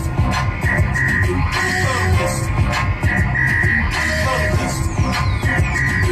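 Loud electronic music with a heavy bass line and repeating synth notes, with a high falling sweep near the end.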